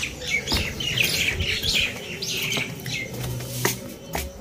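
Birds chirping in many quick, overlapping short calls, thinning out after about three seconds, with a sharp click near the end.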